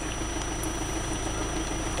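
A Toyota's engine idling steadily, heard from inside the cab.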